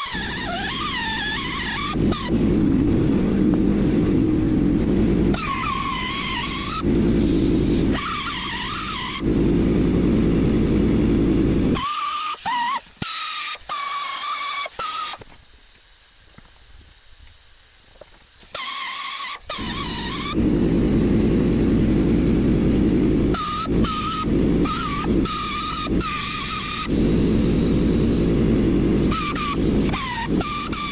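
Handheld air-powered rotary tool running in bursts as it carves a wooden board. Its whine wavers in pitch with the load, and it stops for about three seconds around the middle.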